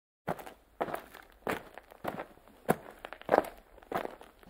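Footsteps, about seven evenly paced steps, a little under two a second.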